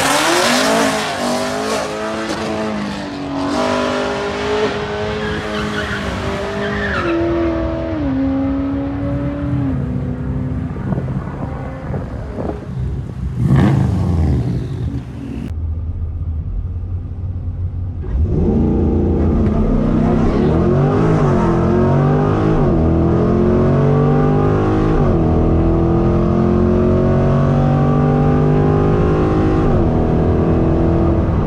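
Stock C8 Corvette's 6.2-litre V8 at full throttle down a drag strip, its pitch climbing and stepping down at each quick upshift as the car pulls away. About halfway through, the same hard-running engine is heard from inside the cabin.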